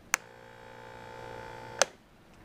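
Battery ULV sprayer's electric pump switched on with a click, humming steadily and getting slightly louder for about a second and a half as it builds pressure toward 60 psi, then a second click and it stops.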